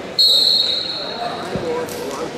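A single loud, high-pitched tone that starts suddenly and fades away over about a second and a half, over the chatter of a large sports hall.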